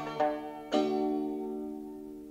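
The closing chord of a folk-song recording on plucked strings, struck about three quarters of a second in and left to ring out, fading away.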